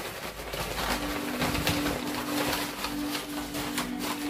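Paper answer slips rustling and crackling as they are handled for the draw, with a steady low hum that starts about a second in.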